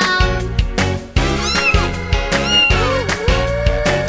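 A cartoon cat meowing over upbeat children's music with a steady beat: two short meows about a second apart, then a longer rising one near the end.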